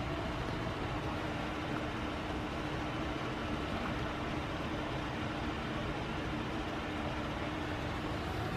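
Steady room hum and hiss with a faint constant low tone, unchanging throughout.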